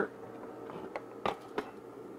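A few light clicks and knocks of small objects being handled on a workbench, three in about a second, over a faint steady hum.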